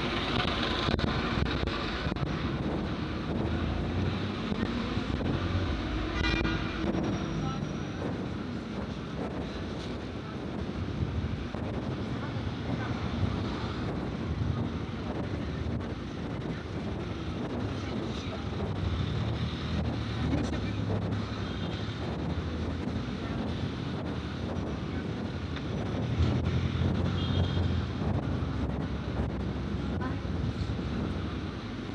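Busy city street ambience: car traffic running by, passers-by talking, and wind buffeting the microphone. A short car horn toot sounds about six seconds in.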